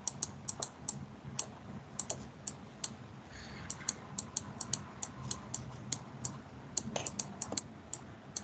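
Quick, irregular clicking of computer input, several sharp clicks a second, over a faint low steady hum.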